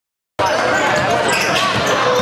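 Silence for the first half-second, then the sound of a basketball game cuts in abruptly: a ball bouncing on a hardwood gym floor amid players' and spectators' voices, echoing in a large gym.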